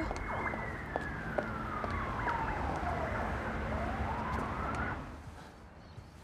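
Emergency vehicle siren with one slow wail, its pitch falling for about three seconds and then rising, over a steady low traffic hum. Both cut off about five seconds in.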